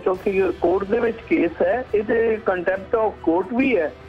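A man speaking continuously in an interview.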